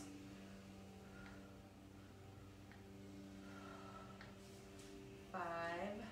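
A faint steady hum of several held tones, with a brief voice sound about five seconds in.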